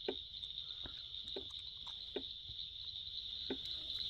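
Crickets chirring in a steady, high-pitched chorus, with a few faint soft ticks scattered through.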